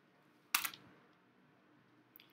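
Near silence broken by one short, sharp click about half a second in, dying away quickly.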